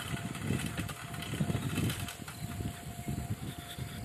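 Gusty wind rumble on the microphone and road noise from riding a two-wheeler along a wet road, with a faint steady whine underneath.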